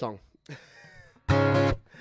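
A single strummed chord on an acoustic guitar about a second and a half in, damped after about half a second.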